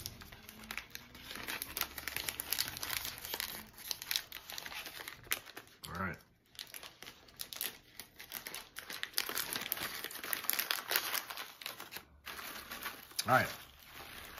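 Plastic snack bag of toasted corn nuts crinkling and crackling as it is handled and opened.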